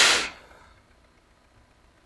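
A man's breath close to the microphone at the start: a short rushing hiss lasting about half a second. Then quiet room tone.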